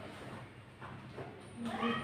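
Soft thumps and rustling of a taekwondo athlete's bare feet and uniform on foam mats while performing a form, with a short high-pitched cry near the end.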